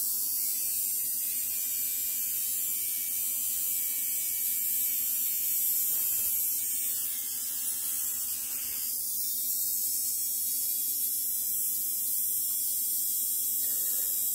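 Small electric motor and geared trucks of an HO-scale Athearn SD40-2 model locomotive, fitted with a new Revolution motor, humming steadily on a bench tester at about nine and a half volts while being broken in. About seven to nine seconds in the hum changes and dips briefly as the current draw jumps, then settles back.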